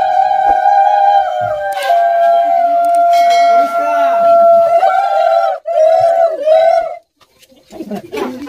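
Women ululating (Bengali uludhwani), a high, sustained, trilling voiced call. Two voices overlap at first, then one holds on. It breaks into short wavering bursts about five seconds in and stops about a second before the end.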